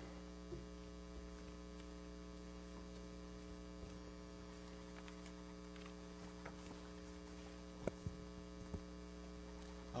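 Steady electrical hum in the meeting room's sound system, with a few faint knocks near the end.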